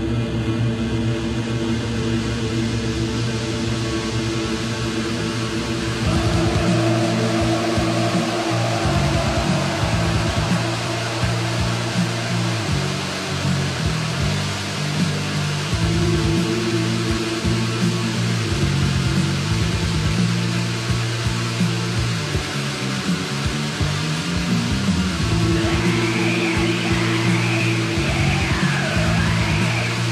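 Black metal recording: a dense wall of distorted guitar over sustained low tones, turning louder about six seconds in as fast drumming and heavier riffing come in.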